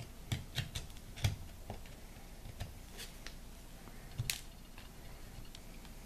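Metal tool prying and scraping at the seam of a cured plaster mold: scattered light clicks and short scrapes, most of them in the first couple of seconds and another a little past four seconds.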